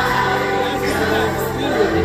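Live R&B concert music over a stage PA, heard from within the audience: several voices singing together over the band.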